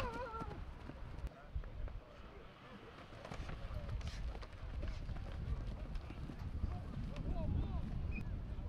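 Football linemen engaging in a one-on-one blocking drill: cleats pounding the grass and short knocks of pads colliding, over a steady low rumble. Shouted voices come in at the start and again near the end.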